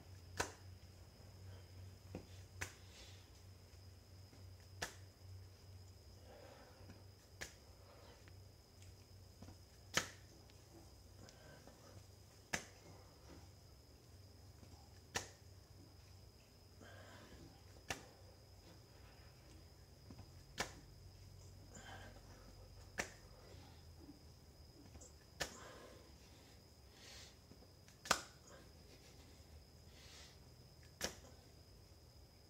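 Hand-release push-ups on a tile floor: a sharp slap about every two and a half seconds, twelve in all, as the hands come back down onto the tiles, with faint breaths between some of them.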